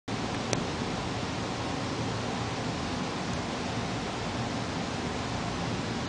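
Steady, even hiss of recording noise from a low-quality home video recording, with one short click about half a second in.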